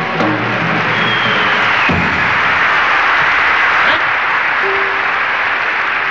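Audience applauding in a live recording, as the last notes of the band's number die away at the start; the clapping swells and then eases off near the end.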